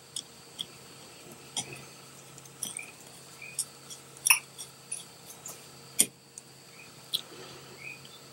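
Small, scattered metallic clicks and ticks from a hand driver turning the rear-sight screws into a Glock slide, with two sharper clicks about four and six seconds in.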